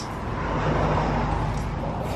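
Road traffic noise: a passing vehicle swelling to a peak about a second in and fading away, over a steady low hum.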